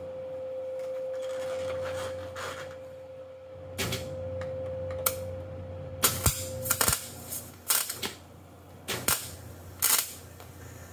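MIG welder arc crackling in short, uneven bursts from about four seconds in, loudest near the middle and near the end, as a steel plate is welded onto the bottom of a Ford 9-inch axle housing; the owner finds the gun not set up well. A steady hum runs under the first several seconds.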